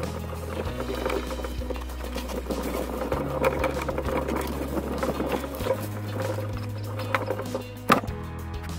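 Background music with sustained bass notes that change every two to three seconds.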